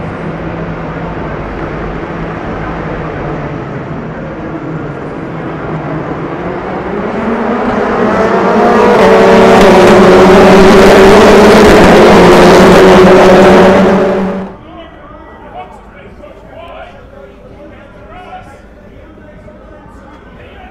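A field of TCR touring cars, two-litre turbocharged four-cylinders, running on the grid, then pulling away and accelerating past together in a loud rising rush of engines. The sound cuts off abruptly a little past halfway, leaving fainter engine noise under a voice.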